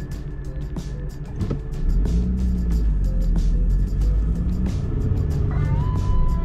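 Car engine and road rumble heard from inside the cabin, growing louder about two seconds in as the car pulls away from a stop, with music playing along.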